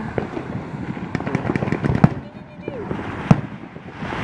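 Aerial fireworks going off: a quick run of crackles and pops, with two sharper bangs about two seconds in and just after three seconds.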